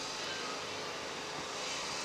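Steady background hum of an outdoor pedestrian shopping street, with no distinct event standing out.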